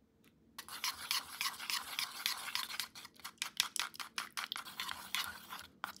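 Homemade face cream being whisked by hand in a bowl: quick, irregular scraping strokes that start about half a second in and stop just before the end.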